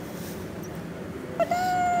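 A low background hush, then about one and a half seconds in a man's high, drawn-out vocal sound of delight after a sip of iced coconut water through a straw, running straight into his speech.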